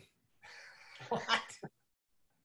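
A man's breathy exhale of laughter, then a short, incredulous 'What?' broken up with chuckles, ending about two-thirds of the way in.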